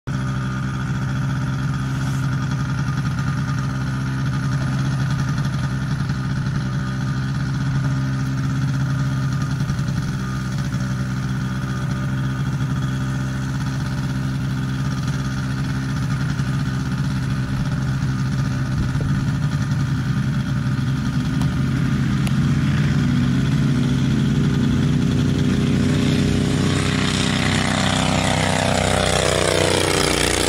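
Legal Eagle ultralight's four-stroke V-twin Generac engine running steadily during takeoff. It grows louder over the last few seconds as the plane climbs toward and past the microphone, and its pitch falls as it goes by near the end.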